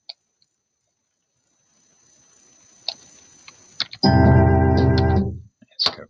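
Computer mouse clicks, then a faint hiss that swells upward like a reverse cymbal, followed by about a second and a half of BeepBox synthesizer playback: loud sustained electronic chord tones that cut off suddenly.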